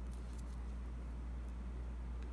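A steady low hum under faint small ticks and rustles of a fine beading needle and thread being passed through glass seed beads.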